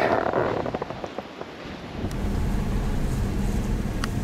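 Faint outdoor noise, then about halfway in the steady low rumble of a car on the road, heard from inside the cabin.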